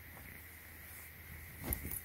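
Cardigan fabric and its plastic bag being handled: quiet at first, then a few soft knocks and rustles beginning about one and a half seconds in.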